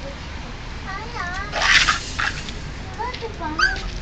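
A cat meows in short, bending calls, once about a second in and again about three seconds in. Between them comes a loud, short crunch of the cat chewing a pork trotter bone.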